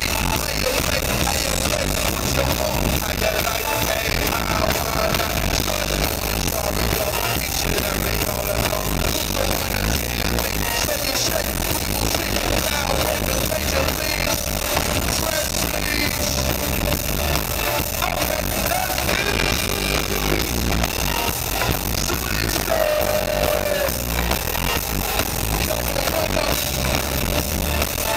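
Live band music played loud at a concert, with bass guitar, electric guitar and drums, heard from within the audience as one dense, even wash of sound.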